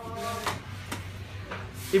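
Knife work and handling of a leg of lamb on a wooden butcher's block: a sharp click about a second in and a scraping rustle near the end, over a steady low hum.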